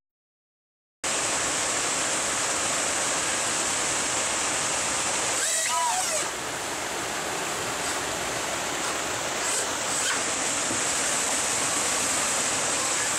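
Water rushing over a river weir: a steady roar that starts suddenly about a second in, after silence. A brief whine rises and falls about six seconds in.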